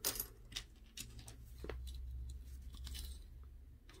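Small plastic model-kit parts clicking and rattling against each other as they are handled and sorted, a few sharp clicks mostly in the first two seconds, over a faint low hum.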